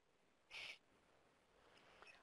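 Near silence, broken about half a second in by one brief, faint hiss.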